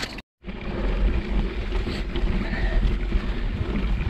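Wind buffeting an action camera's microphone on a mountain-bike climb, a steady low rumble with rustling over it, after a brief dropout to silence just after the start.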